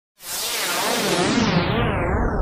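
Synthesized whoosh for an animated logo intro. A burst of hiss begins a moment in and darkens steadily as its high end sweeps downward, with a deep rumble building underneath.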